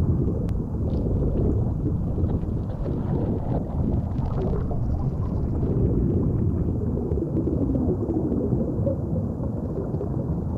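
Underwater ambience in a shallow reef lagoon: a steady low rumble of moving water with faint scattered clicks.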